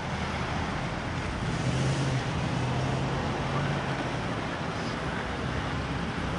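City road traffic: a steady wash of traffic noise with a low, steady engine hum from a bus running close by, a little louder through the middle.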